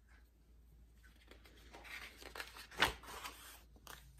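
Page of a large picture book being turned by hand: paper rustling and sliding for about two seconds after a quiet start, with one sharp papery flap about three seconds in.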